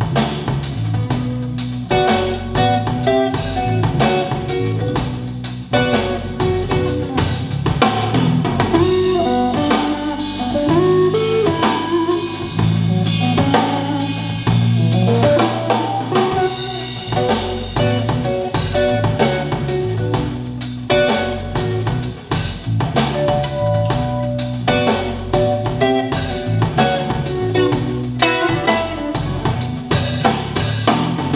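A jazz track with drum kit, cymbals and guitar played through a pair of Focal Vestia N°1 two-way bookshelf speakers, recorded by a microphone in the listening room.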